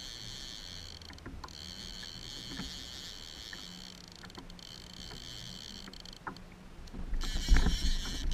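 Quiet on-water sound from a fishing kayak, with a few scattered soft clicks as a bent rod and reel are worked against a hooked fish. About seven seconds in, a much louder low rumble comes in.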